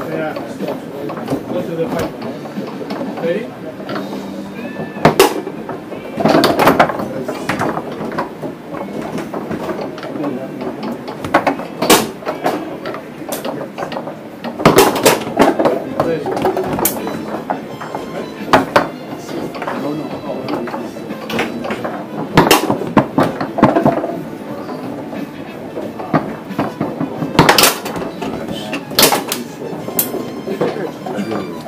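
Foosball game in play: the hard ball cracking off the plastic men and table walls in about ten sharp, irregularly spaced hits, with rods clacking, over a bed of voices.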